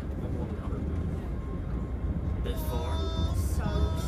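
Steady low rumble of a Red Line subway car at a station platform, with a voice speaking briefly in the last second and a half.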